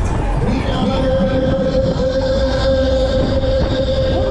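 A long steady horn-like tone from a Break Dance fairground ride's sound system, starting about half a second in and holding, over the constant rumble and wind of the spinning ride.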